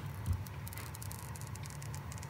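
Protective film being peeled off the screen of a new iPhone 14, a quick run of faint crackles, after a soft bump near the start.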